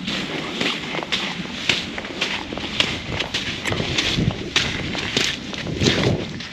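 Footsteps of a hiker walking on wet sandy and rocky ground, an even pace of about two steps a second.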